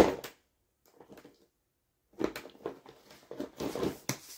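Plastic body-care bottles and packaging being handled: a sharp knock as one is set down, a pause of about two seconds, then a run of small clicks, taps and rustles as the next one is picked up.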